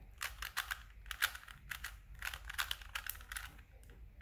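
Plastic 3x3 Rubik's cube being turned by hand through a sequence of twists, its layers clicking in quick runs of sharp clicks.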